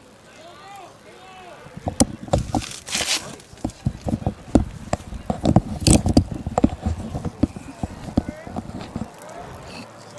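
Irregular sharp knocks and clicks, coming thick and fast from about two seconds in, with faint voices at the start.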